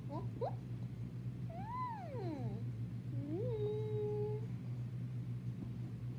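Domestic cat meowing: a short call at the start, a long meow rising and falling in pitch about one and a half seconds in, and another that rises and then holds one steady note for about a second, over a steady low hum.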